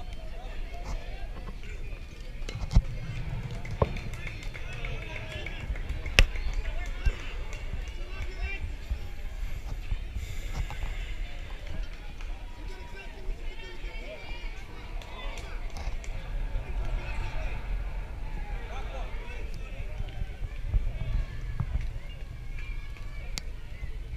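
Voices and chatter around a youth baseball field over a steady low rumble. Sharp knocks come about three, four and six seconds in, the one near six seconds the loudest.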